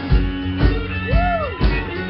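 Live rock band with electric guitar playing, drums keeping a steady beat about twice a second. About a second in, a note swoops up and falls back down.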